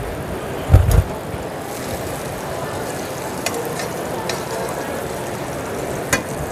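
Butter melting and sizzling in a hot stainless steel sauté pan, a steady frying hiss, stirred with tongs. A short, loud low thump comes about a second in.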